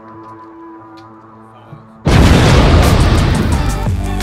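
A steady, sustained musical drone, then about two seconds in a sudden, very loud explosion boom that keeps rumbling.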